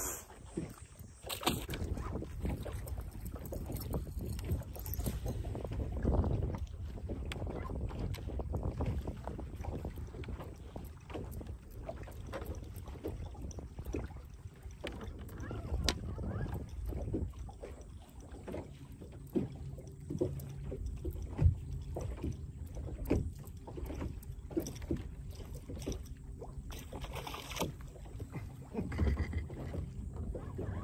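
Small waves slapping against the hull of a bass boat: a steady low rush with many irregular small knocks. Wind buffets the microphone.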